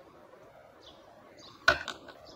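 Two sharp knocks in quick succession near the end, over faint bird chirps in the background.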